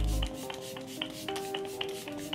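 Makeup setting spray misted from a pump spray bottle: a string of short, hissy spritzes, several in quick succession, over soft background music.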